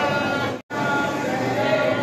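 People talking, with the sound cutting out briefly about two-thirds of a second in.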